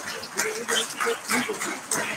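Audience applauding in a hall, irregular and mixed with voices, heard through a video-call stream.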